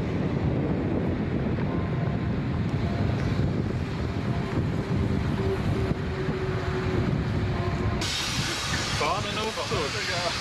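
Loud steady rumble and hiss of wind on the microphone mixed with road traffic crossing a steel truss bridge. About eight seconds in, the sound changes abruptly to a brighter hiss, and voices come in near the end.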